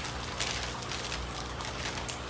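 Thin clear plastic bag crinkling and rustling as hands push wrapped plant bundles into it, a soft irregular rustle.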